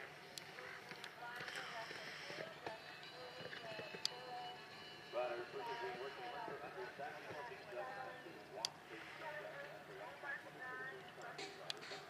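Faint, indistinct voices in the background, with a few sharp clicks now and then.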